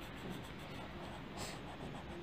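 Coloured pencil scratching on paper in short shading strokes, with one sharper scratch about one and a half seconds in.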